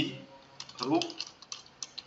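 Computer keyboard typing: an irregular run of quick key clicks.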